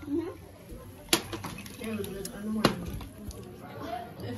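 Two sharp clinks of tableware on a table, about a second and a half apart, with quiet talk in the background.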